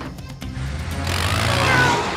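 Cartoon soundtrack: background music over the engine of an animated rescue vehicle driving off, its rumble growing louder through the second half.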